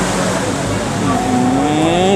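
Loud steady rushing noise of a river passenger boat under way, its engine and the water along the hull blending together. About a second in, a drawn-out voice rises slowly in pitch over it.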